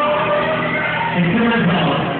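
Live rock band playing, with singing over electric guitar, bass and drums; the sound is muffled at the top.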